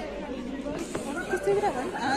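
Several people chatting in a cinema audience, their voices overlapping without any one standing out.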